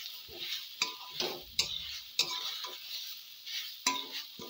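Metal spatula scraping and clinking against a metal kadai as grated carrot, onion and peas are stirred, with a steady sizzle of the vegetables frying in oil underneath. The strokes come roughly every half second, a few with a short metallic ring.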